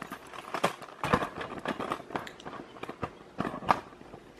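Irregular scuffling and light knocks of dogs scrambling about in play, loudest about three and a half seconds in.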